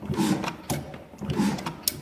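Old Ruston stationary diesel engine running slowly, its fuel pump and valve gear giving a rhythmic mechanical clatter about every two-thirds of a second, with one sharp click near the end.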